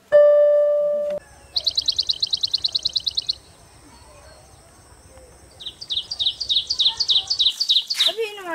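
A piano note rings and cuts off about a second in. Then a bird sings two rapid trills of high, evenly repeated chirps, the second starting near the middle and running on to the end.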